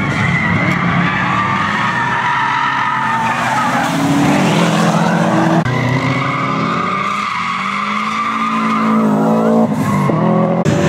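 Subaru Impreza's flat-four engine revving hard through a track corner, its pitch rising and falling with a sudden drop about halfway through, with tyres squealing.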